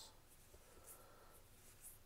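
Near silence with a few faint, brief swishes of Magic: The Gathering trading cards sliding against each other as they are flipped through.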